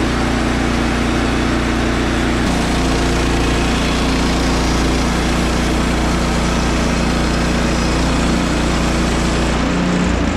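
A Woodland Mills HM130MAX portable bandsaw sawmill's gas engine runs steadily under load as the band blade cuts lengthwise through a white pine log. The engine note changes about two and a half seconds in.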